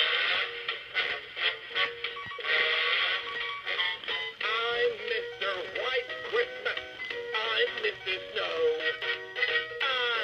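Gemmy animated Mr. Snow Business singing snowman toy playing its song through its built-in speaker: a music track, with a male voice singing more clearly from about halfway in.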